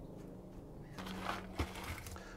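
Faint handling sounds as dried pea seeds are gathered into a hand, with a low steady hum starting about a second in.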